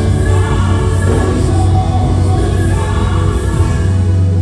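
Gospel worship music: voices singing together over a sustained low keyboard pad, with the singing thinning out near the end.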